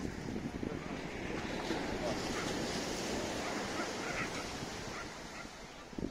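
Steady rushing wind noise buffeting the microphone, with faint voices under it.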